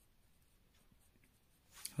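Faint scratching of a pen writing numbers on paper.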